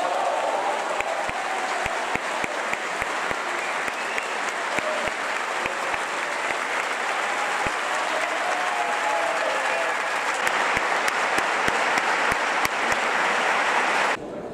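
Concert-hall audience applauding, the clapping dense and steady and growing louder over the last few seconds, with a few voices calling out.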